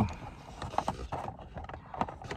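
Quiet handling noise with a few light, scattered clicks as a 5.5 mm tool is worked onto the airbag retaining bolt behind a steering wheel.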